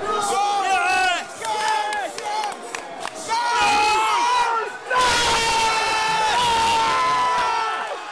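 Excited shouting voices over crowd noise, in short bursts at first, then from about five seconds in a louder, long held yell with a crowd underneath.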